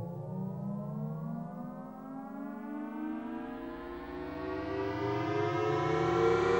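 Electronic synthesizer music: a dense chord of layered tones glides slowly upward in pitch, siren-like, swelling louder toward the end.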